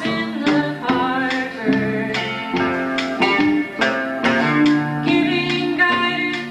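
Acoustic guitar strummed in a steady rhythm, with a held melody line of sustained notes moving step by step above it: the instrumental opening of a live country song.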